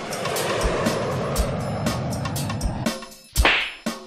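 A drum beat runs under a broad noise swell for about three seconds, then a short, sharp whoosh effect sweeps up about three and a half seconds in.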